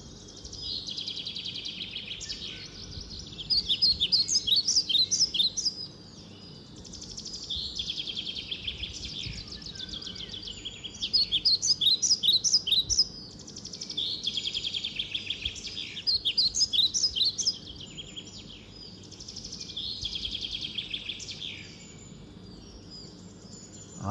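A songbird singing: repeated phrases of quick, high-pitched notes, each lasting a couple of seconds, with short pauses between them and some phrases louder than others.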